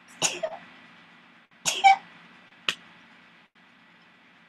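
A woman sneezing twice in a run of sneezes, the second one louder, followed by a short sharp click.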